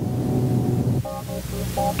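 Background music from the film's soundtrack: a held low chord, then a few short higher notes repeating from about a second in, over a faint steady hiss.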